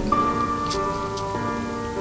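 Slow background music of held notes, the chord changing about halfway through, over a steady patter of light rain.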